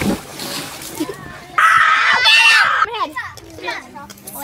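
Water splashing in a pool as a child plunges in, with a sharp slap and then about a second and a half of spray. Then a child lets out a loud, high-pitched shriek lasting about a second, followed by children's voices.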